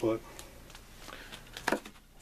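A comic book being handled and swapped by hand: faint handling noise, then a short, sharp rustle and tap near the end as the next issue is set in place.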